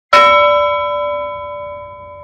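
A single bell-like metallic chime, struck once and ringing with several clear tones that fade slowly, used as a sound effect on a title card.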